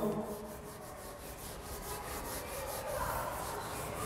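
A sponge eraser wiping marker ink off a whiteboard in quick back-and-forth strokes, a soft repeated rubbing.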